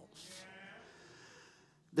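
A man's quick breath drawn close to a handheld microphone, then faint room sound fading to near silence.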